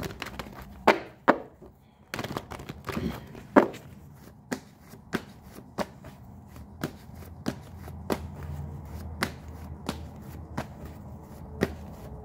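A tarot deck being shuffled by hand: a steady string of short, sharp card taps and slaps, about two a second.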